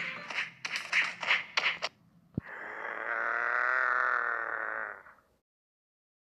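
Cartoon sound effects: a rapid run of about six sharp hits in the first two seconds, matching an "OUCH!" impact gag. A click follows, then a held, slightly wavering pitched sound for about two and a half seconds. It cuts off abruptly into silence.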